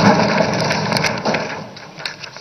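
Legislators thumping their desks in applause, a dense rumble of many knocks that dies away over the first second and a half.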